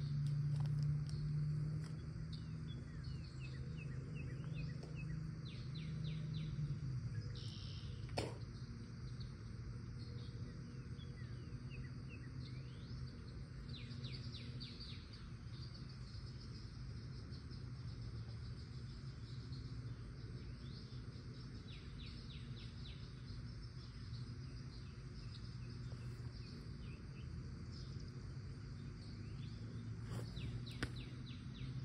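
Small birds chirping in short quick bursts over a steady low background hum, with one sharp click about eight seconds in.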